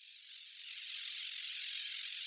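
A steady, high hiss with no low end that builds slightly over the first half second and then holds.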